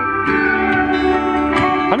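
Guitar music playing from a pair of GoHawk ATN4 Bluetooth speakers turned up to full volume.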